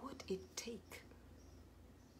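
A woman speaking very softly, close to a whisper, for about the first second, then quiet room tone.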